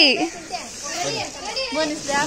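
Children talking and calling out over one another. A held sung note slides down and stops right at the start.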